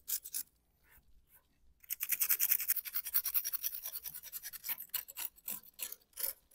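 Razor knife blade scraping along the rough edges of a freshly demolded, overnight-cured concrete paver, trimming them clean. A couple of scrapes, a pause of about a second and a half, then about four seconds of quick, short, repeated scraping strokes.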